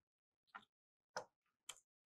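Three faint, sharp clicks from a computer keyboard and mouse being worked, spaced about half a second apart.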